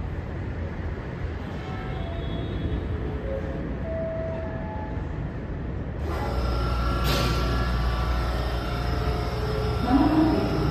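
A Hankyu electric train standing at a station platform, its onboard equipment giving a steady low hum. About six seconds in the hum turns louder, with a steady higher whine above it.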